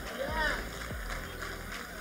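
A pause in a sermon: quiet sound of a large church hall with a low steady hum, and a brief faint voice about half a second in.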